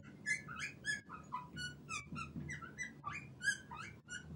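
Fluorescent marker squeaking on a black writing board as a word is written: a run of short, high squeaks, several a second.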